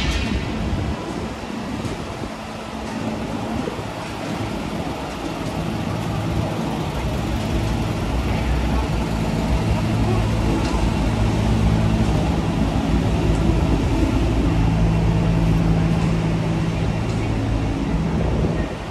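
Street traffic noise with a vehicle engine running at a steady idle close by, its low hum growing louder through the second half.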